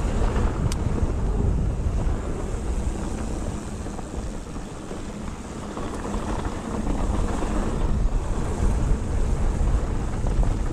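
Wind buffeting the camera microphone and the rumble of mountain-bike tyres rolling fast over a dry dirt trail on a downhill descent, with one sharp click about a second in and the noise growing louder toward the end.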